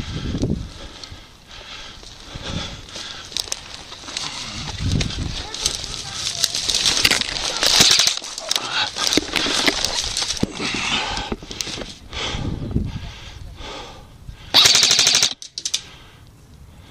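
Airsoft guns firing full-auto bursts, a rapid clicking rattle of shots. The loudest is a burst of under a second near the end, close to the microphone.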